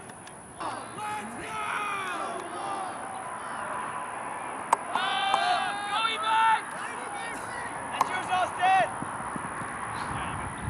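Players shouting calls across an ultimate frisbee field, with loud, high-pitched cries about five seconds in and again near the end. Two sharp smacks cut through the shouts.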